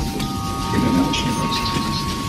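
Noisy lo-fi instrumental backing: a dense crackling, rain-like hiss with a few steady high tones held over it, and a sharp click at the very start.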